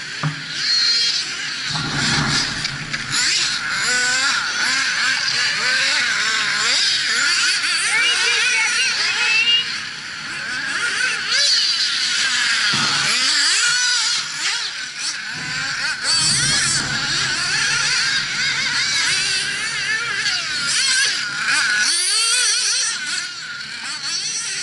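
Several nitro-powered RC buggy engines running at high revs, their overlapping high-pitched notes rising and falling as the cars throttle and brake around the track.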